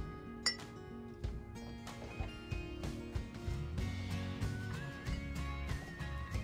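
Background music with soft held notes, over a few clinks of a metal spoon against a glass measuring jug as baking soda is scooped in; the sharpest, ringing clink comes about half a second in.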